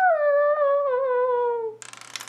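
A person's voice holding a drawn-out, hummed or sung "ahh" that slowly falls in pitch and stops shortly before the end, followed by a few light clicks.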